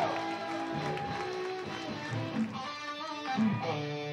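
Electric guitar played through a Paul Reed Smith amplifier, sounding out loose notes with a few held notes near the end.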